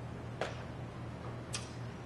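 Pause in a talk: steady low room hum with two short clicks about a second apart.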